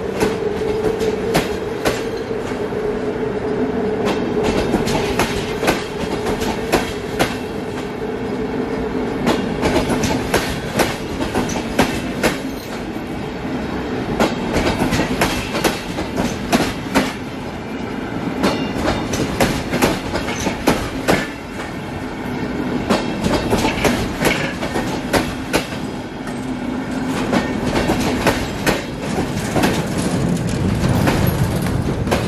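Passenger coaches and car-carrier wagons of a train rolling slowly past, their wheels clicking irregularly over rail joints, over a steady hum of rolling noise.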